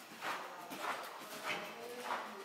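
Ridden horse moving over soft arena footing, its stride giving a dull, even beat about every 0.6 seconds.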